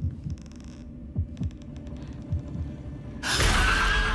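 Horror-trailer sound design: scattered low thumps under a low hum, with two short bursts of rapid clicking in the first two seconds. About three seconds in, a loud rushing noise swells up and is the loudest part.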